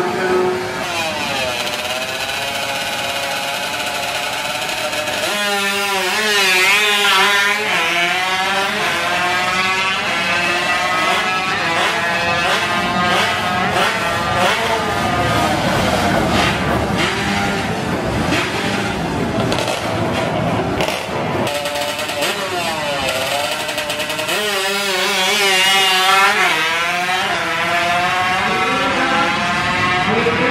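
High-revving single-cylinder four-stroke engines of heavily tuned Honda Wave drag scooters running hard. The pitch climbs and drops again and again through the gears, with two loudest, wavering stretches of hard revving, one about six seconds in and one about twenty-five seconds in.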